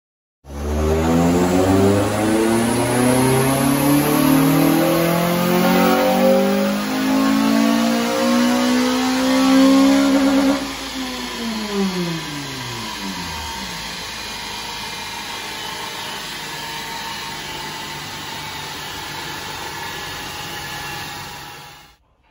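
Honda Civic Type R FN2's 2.0-litre i-VTEC four-cylinder at full throttle on a rolling road, revs climbing steadily for about ten seconds in one gear. Then the throttle closes, the revs fall away over a few seconds, and a quieter steady running noise carries on.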